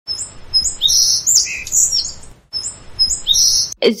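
Birdsong: high chirps and whistles, the same phrase starting over about two and a half seconds in, as a looped recording would.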